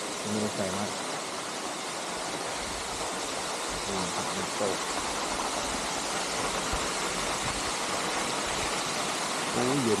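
Waterfall: a steady rush of falling water.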